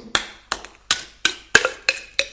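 A spoon stirring and knocking inside a cup, six short clinks about three a second, some with a brief ring.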